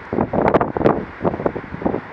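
Strong wind buffeting the microphone in irregular gusts.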